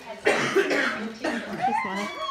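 A person coughing once, a rough noisy burst lasting about a second, followed by a voice with gliding pitch.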